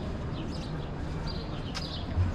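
Small birds chirping in short, high calls, scattered through the moment, over a steady low background din of people outdoors.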